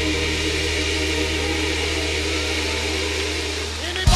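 Live gospel band holding a low sustained chord under a steady high hiss, with no singing.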